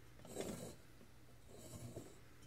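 Handling noise from a brass ceiling-fan canopy being moved on a workbench: two brief, faint scrapes, one near the start and one near the end, over a low steady hum.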